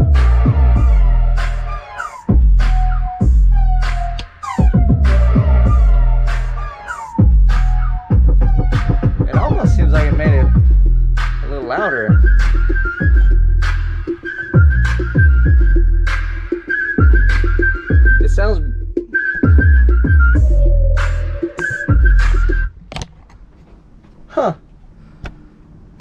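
Music with deep, repeated bass notes and sharp beats played loud through a car-audio system with Kicker 12-inch Comp C subwoofers, heard inside a motorhome. A high whistle-like melody joins about halfway through, and the music stops near the end.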